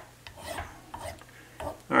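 A double-cut file drawn across the end of a wooden violin sound post, a few quiet rasping strokes as its end is beveled to fit the curve of the top.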